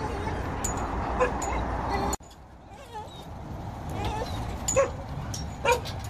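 Dogs whining and yipping in excited greeting of a familiar person not seen for a long time, with short whines that slide up and down. Near the end come two short, sharp yelps, the loudest sounds here.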